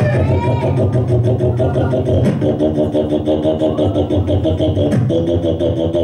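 Solo beatboxing through a handheld microphone and PA: a fast, steady beat of hi-hat-like clicks over a low bass pulse, with held pitched tones that change about two seconds in and again about five seconds in, and a thin high tone from just after two seconds in.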